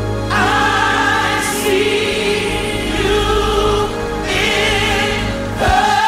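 Gospel choir holding long sustained chords over steady low instrumental backing. Near the end the choir moves to a new held chord and the low backing drops out.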